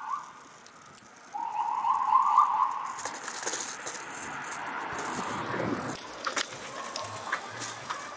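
City street traffic: a trilling, rattling tone that lasts about a second and a half, then the rising and fading rush of a passing vehicle, with a few sharp clicks near the end.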